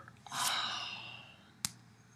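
A man's long breathy exhale, like a sigh, fading away over about a second, followed by a single short click near the end.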